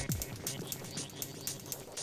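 Electronic acid-style techno played live on a Korg Electribe 2 Sampler with a Novation Bass Station II. The deep repeating beat drops out right at the start, leaving sharp high percussive ticks over a busy, textured synth layer.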